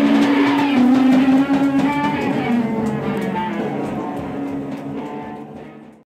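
A live rock band's electric guitars hold a ringing, droning chord as the music winds down, fading out gradually toward the end.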